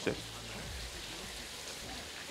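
Spiced liver, kidney and heart masala sizzling steadily in a nonstick wok as it is stirred. The oil has separated and the dish is in the last stage of being fried down.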